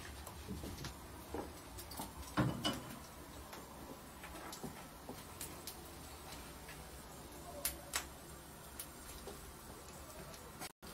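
Syrniki frying in oil in a pan: faint, scattered ticks and pops of spattering oil, with a couple of sharper clicks about two and a half seconds in and again near eight seconds.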